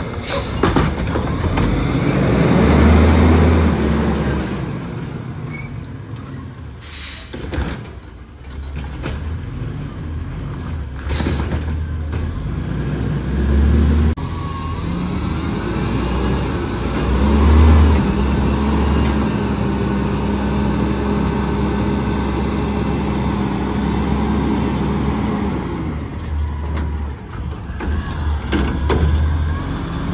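Autocar ACX garbage truck with a Heil front-loader body and Curotto-Can arm: its diesel engine revs up to drive the hydraulics as the arm lifts and tips a trash cart into the hopper, holding at raised revs for several seconds during the dump before dropping back to idle. A brief hiss sounds about eleven seconds in.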